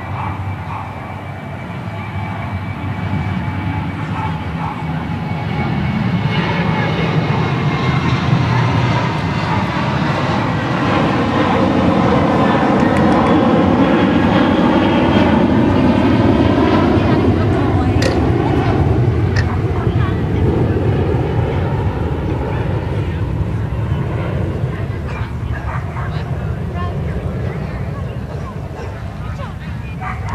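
An aircraft flying over, its engine sound building slowly to its loudest about halfway through and then fading away.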